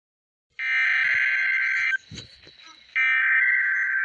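SAME digital header bursts of a NOAA Weather Radio Required Weekly Test from a Midland weather radio's speaker: two harsh, buzzing data bursts about a second and a third long, a second apart, the opening of the weekly test alert. A low thump of the radio being handled falls between them.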